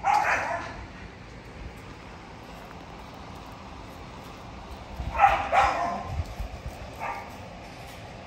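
Bully puppy barking in short bursts: one bark at the start, two close together about five seconds in, and a short one about seven seconds in.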